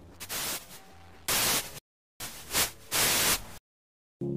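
Bursts of static-like hiss over faint low tones, a noise effect at the start of a pop song. It cuts off abruptly to silence about halfway through and again near the end.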